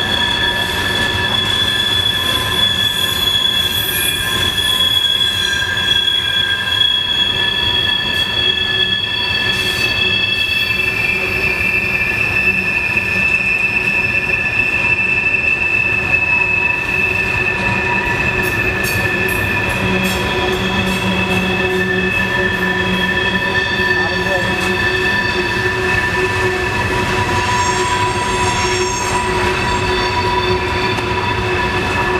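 Freight train cars rolling past with their wheels squealing on the tight curve: several high, steady squealing tones that come and go and change pitch over a constant rumble of the wheels on the rails.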